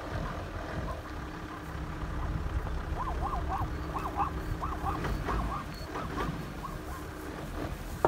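A plains zebra calling: a quick run of about ten short, yelping barks that starts about three seconds in and lasts a few seconds, over a low steady rumble.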